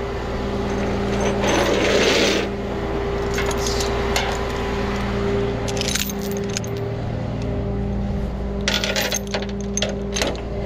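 Tow chain links and ratchet-strap hardware clinking and rattling against the steel diamond-plate deck of a flatbed tow truck, in several short clusters, with a brief scraping rush about two seconds in. A steady engine hum runs underneath.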